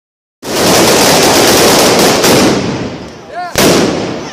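A string of firecrackers laid along the street going off in very rapid succession, a dense continuous crackle of bangs like machine-gun fire. It starts about half a second in and thins out toward the three-second mark, with a short shout in the lull, then a fresh loud burst just before the end.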